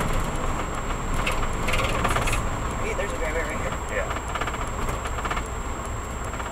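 Fire-department vehicle driving on a gravel road: a steady low rumble of engine and tyres, with short bursts of rapid rattling and clinking a few times.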